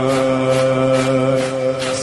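A male voice singing a Shia mourning lament (noha), holding one long steady note and moving to a new syllable near the end.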